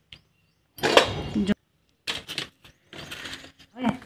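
Light knocks and rattles of a stainless-steel spice box (masala dabba) being handled and opened, between a few short spoken words.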